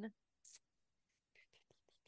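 Near silence, broken by a short breathy hiss about half a second in and faint whispered mouth sounds in the second half: a person hesitating before speaking.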